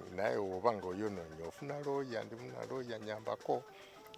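A man laughing heartily in pulses, then speaking briefly.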